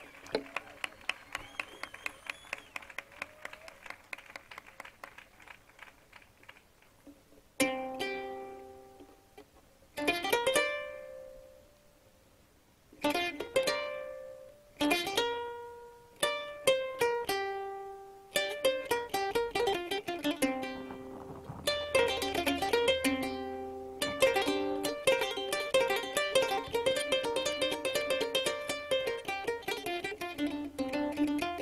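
Solo double-necked plucked lute with nylon strings. It starts with a quick run of soft rapid plucks, then plays single ringing notes a couple of seconds apart, and in the last third settles into a busy, continuous melody.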